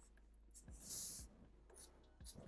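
Black felt-tip marker drawing across paper: one short hiss of a stroke about a second in and a fainter one near the end, with near silence between.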